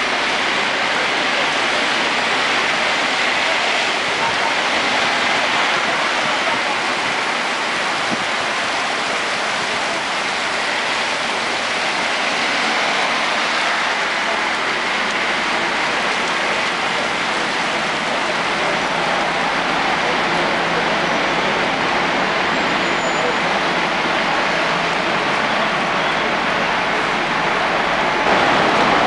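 Very heavy rain pouring onto paving and a road: a dense, steady hiss of splashing water that does not let up.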